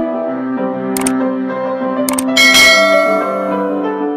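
Subscribe-button animation sound effects over background piano music: mouse clicks about a second in and again about two seconds in, followed by a bright bell chime that rings out and fades.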